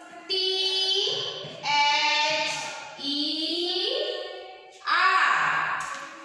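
A high voice chanting in a drawn-out sing-song, about four long notes that each rise in pitch, in the manner of spelling letters aloud one at a time while they are written on a blackboard.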